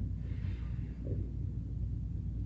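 A quiet breath drawn in through the nose, heard as a faint soft hiss about half a second in, over a steady low hum.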